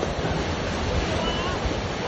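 Sea surf breaking and washing over rocks, a steady rush, with wind buffeting the microphone.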